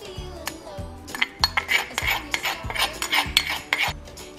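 Metal spoon scraping and clinking against a mortar and bowl while ground sesame seeds are scooped out, a quick run of scrapes and taps starting about a second in and stopping just before the end. Background music with a steady beat plays underneath.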